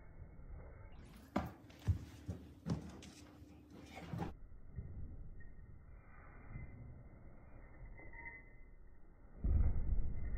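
Feet thumping on a rug-covered floor as children jump with both feet over a tall stack of pillows: a few short knocks between about one and four seconds in, then a heavier low thud of a landing close by near the end.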